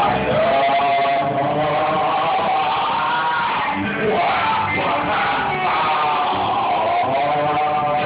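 A man singing long, drawn-out notes that slide up and down into a microphone, over a loud rock karaoke backing track.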